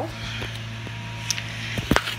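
Handling noise from a handheld phone: a finger shifting on the phone gives a couple of sharp clicks near the end, over a steady low hum.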